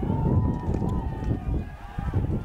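Indistinct, high-pitched shouting from lacrosse players calling out during live play, over a steady low rumble.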